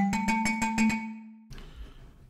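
Native Instruments Mikro Prism synth playing its 'Kalimba' preset: a quick run of plucked, pitched notes over a held low tone, stopping about one and a half seconds in.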